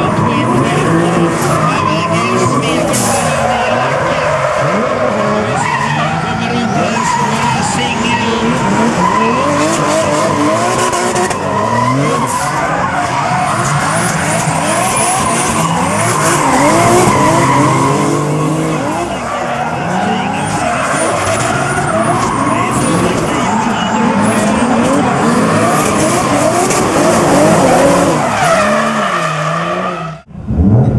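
Two drift cars in a tandem run, their engines revving up and down hard while the tyres squeal and skid continuously, loud throughout.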